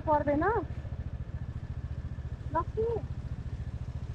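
Motorcycle engine running at idle, a steady low pulsing with an even beat, and brief bits of a voice at the start and again about two and a half seconds in.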